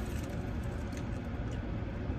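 Steady low hum of a car's cabin, with faint chewing of a crunchy fried corn dog.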